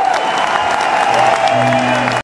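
A concert crowd applauding and cheering as the band's closing notes ring out at the end of a rock song. A held tone wavers and bends in pitch throughout, and a low sustained note comes in about halfway through.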